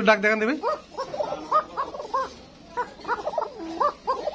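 An animal's short, rising-and-falling yelps, repeated in a quick series from about half a second in.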